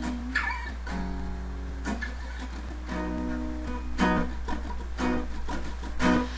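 Solo acoustic guitar strumming chords, a new chord struck about once a second.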